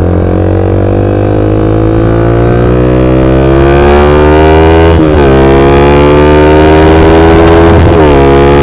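A 2008 Yamaha Vixion's 150 cc single-cylinder four-stroke engine, fitted with a modified exhaust, accelerating while being ridden: the engine note climbs steadily, drops at an upshift about five seconds in, then climbs again, with another shift near the end.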